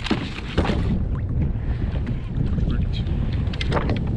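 Wind rumbling on the microphone in a steady low buffeting, with a few short clicks and knocks in the first second.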